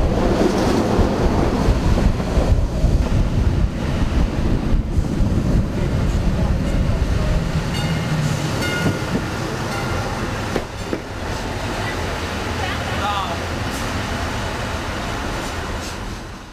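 Running noise of a Ferrovie della Calabria narrow-gauge train heard from on board: a steady rumble of wheels on rail that eases off after about ten seconds as the train comes into a station.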